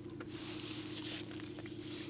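Soft rustling of a paper wrapper and quiet chewing as two people eat black sausage, loudest in the first second, over a steady low hum.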